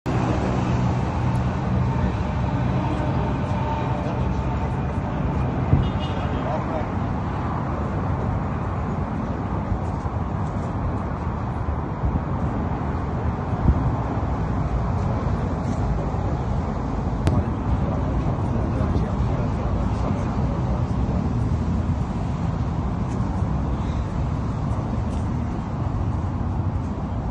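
Outdoor street ambience: a steady traffic rumble with people's voices in the background, and a few brief clicks.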